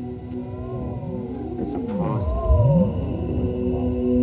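Electronic drone played through a Dr. Scientist BitQuest digital effects pedal: under a steady low hum, several pitches sweep up and down in crossing arcs. One dives very deep about two and a half seconds in, the loudest moment, giving a whale-like swooping sound.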